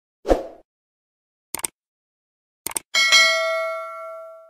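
Subscribe-button animation sound effects: a short swish, two clicks about a second apart, then a bell ding near the end that rings on and fades.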